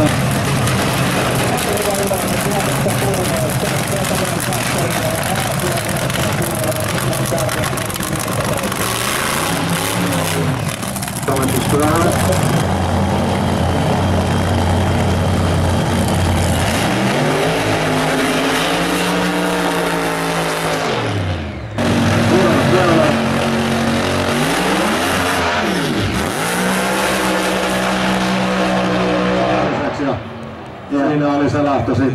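Loud drag-racing car engine running. In the second half it is revved up and back down twice in long pitch sweeps.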